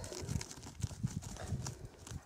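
A dog moving about close by, snuffling and scuffling: a string of soft, irregular thumps and rustles with a few sharp clicks.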